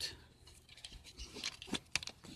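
Faint handling noise from a plastic 3D pen being turned over in the hand: scattered small rustles and clicks, with two sharper clicks near the end.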